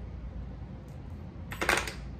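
Small fishing lures clinking and clattering as they are dropped into a plastic tackle-box tray: a brief cluster of sharp clicks near the end.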